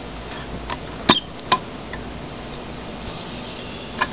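A few light metallic clicks and a small clink as the open steel box of an old fused disconnect switch is handled, the sharpest click about a second in.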